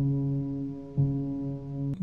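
Sampled grand piano, Ableton's Grand Piano single sample with light tape, EQ and reverb, playing a low bass note slowly. It is struck at the start and again about a second in, and each note is held and rings on into the next.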